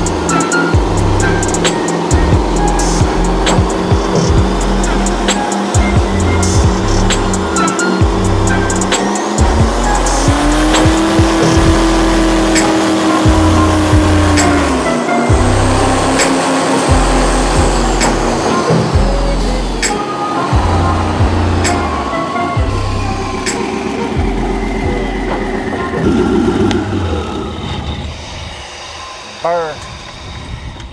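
Background music with a heavy, regular beat over a 900 hp twin-turbo airboat engine and propeller running hard. The engine note climbs about ten seconds in, holds, then drops in two steps as it throttles back, and the sound tapers off near the end as the propeller winds down.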